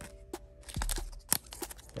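Foil booster pack wrapper crinkling and crackling in the hands, a few sharp crackles, the loudest a little past halfway. Faint background music with held tones underneath at first.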